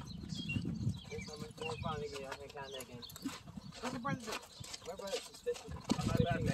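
A racehorse's hooves clopping at a walk, with indistinct voices nearby.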